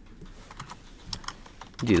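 Computer keyboard being typed on: a quick run of separate key clicks as a word is entered, with a man's voice starting just before the end.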